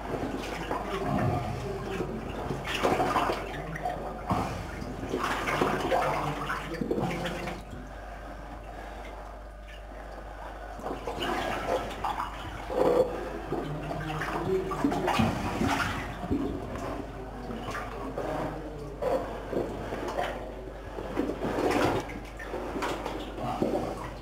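Deep water sloshing and splashing in irregular surges as a person wades through a flooded mine tunnel, easing off for a few seconds about a third of the way in.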